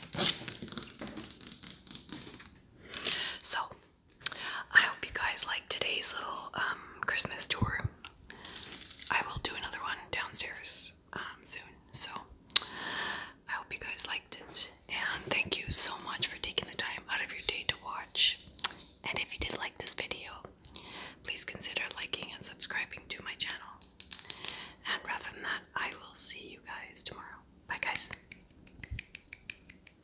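Close whispering, broken up by quick, sharp clicks of long fingernails tapping on decorations.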